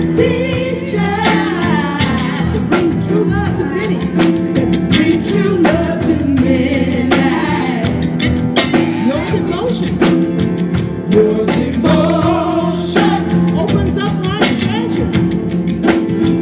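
Live inspirational devotional song: voices singing a melody over instrumental accompaniment with sustained chords and a rhythmic pulse.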